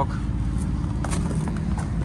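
A steady low engine rumble, with a few light crunches of footsteps on gravel.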